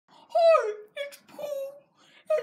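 A high-pitched voice wailing in three short cries, the first longer and falling in pitch, the next two shorter and level.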